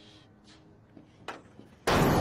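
A steel shipping-container door bangs as it is shoved open near the end, a sudden loud crash that rings and fades slowly. Before it there are only a few faint knocks.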